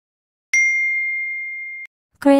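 Phone text-message notification ding: one clear bell-like tone that sounds about half a second in, fades slowly, and cuts off near the end.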